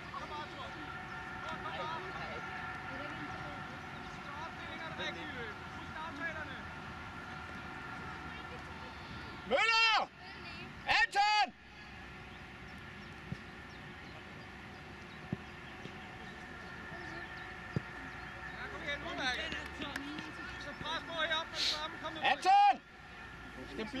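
Shouting on a football pitch: faint calls from players in the background, with two loud, short shouted calls about ten seconds in and more shouts near the end.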